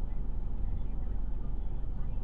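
Car running, heard from inside the cabin: a steady low rumble and hum.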